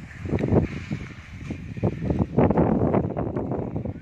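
Wind buffeting the phone's microphone in irregular gusts.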